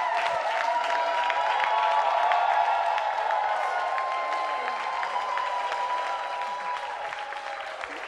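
A small audience clapping, with long held tones above the claps. The applause dies down over the last couple of seconds.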